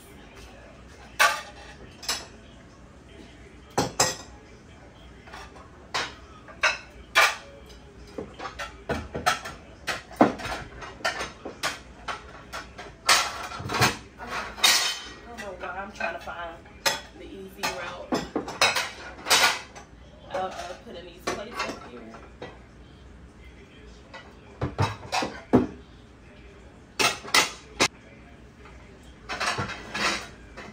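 Clean dishes and cutlery from a dishwasher clinking and clattering as plates and bowls are stacked onto cabinet shelves. The sharp clinks come in irregular bursts, with a short lull about two-thirds through.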